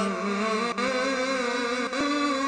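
A man's voice in melodic Quran recitation, holding one long, slightly wavering note.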